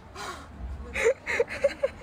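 A person gasping in a quick run of short, breathy bursts, about four of them, starting about a second in, amid panicked shouting over an animal clinging to them.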